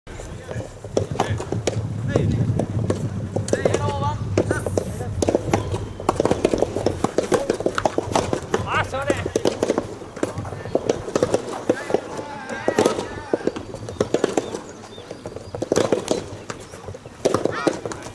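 Voices of players and onlookers calling and talking, over frequent sharp knocks of rubber soft tennis balls being struck and bouncing on the courts.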